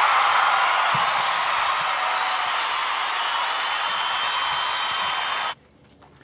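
Audience applause and cheering, a steady dense sound that cuts off abruptly near the end.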